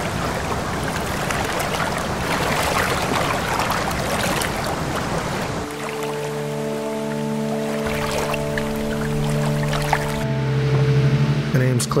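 Rushing, churning water. About halfway in, music with long held chords comes in over it, and near the end the water sound thins out.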